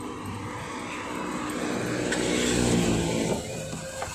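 A car engine running, getting steadily louder for about three seconds and then dropping off shortly before the end.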